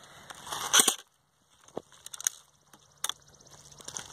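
Handling noise from a phone camera being passed between hands: rubbing and knocks, the loudest a scrape just before a second in, then a brief near-silent gap and a few sharp clicks.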